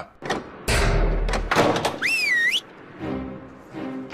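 A man's short laugh, then a heavy thud with a deep rumble, a few sharp clicks, and a wavering whistle that slides up, dips and rises again, over music.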